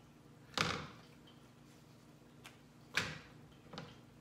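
A cooking utensil clattering against a nonstick frying pan: two loud sudden knocks about two and a half seconds apart, with a few lighter taps between, over a faint steady hum.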